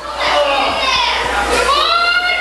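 Children's voices shouting and cheering, high-pitched calls that rise in pitch, the loudest one near the end.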